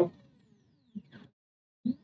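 Near silence between sentences, broken by two faint, very short sounds about a second in.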